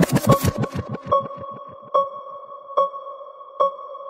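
Breakdown of a hypertechno dance track: the beat drops out, low thumps fade away over the first second, and then a sustained electronic tone carries on with a short ping about every 0.8 s.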